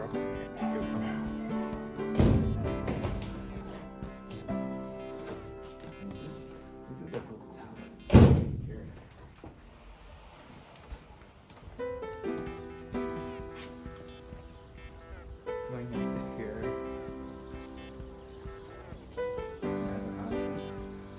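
Muezzin's call to prayer sung over a mosque loudspeaker: long held, slightly wavering phrases with pauses between them. A loud thump about eight seconds in, and a smaller one about two seconds in.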